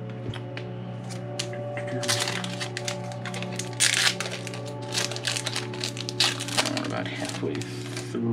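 Foil booster-pack wrapper crinkling and tearing as it is pulled open by hand, a dense run of crackling from about two seconds in until shortly before the end, over steady background music.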